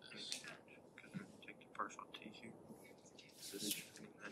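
Faint, quiet talk and whispering among several people working through a class exercise, in scattered low snatches, with a short burst of hiss-like noise about three and a half seconds in.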